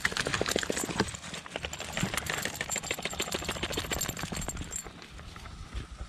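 Close, irregular crackling and rustling of movement through shoreline grass, twigs and mud, a dense run of small clicks that eases after about five seconds.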